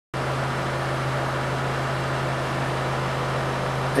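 A steady mechanical hum: a constant low drone with a fine, rapid pulsing under it and an even hiss over the top, unchanging throughout.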